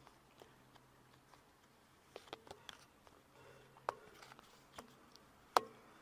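Faint scattered clicks and small taps over quiet room noise, several clustered a couple of seconds in and one sharper click a little before the end.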